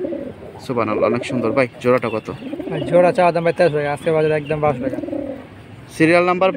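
Domestic pigeons cooing in a cage, a run of repeated rising-and-falling coos, with a man's voice over them.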